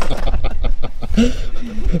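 A man laughing hard: a quick run of breathy chuckles, easing off into a few short voiced sounds in the second half.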